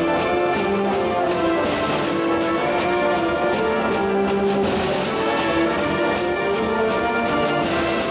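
Concert wind band playing live: brass and woodwinds sustain full chords that shift every second or so.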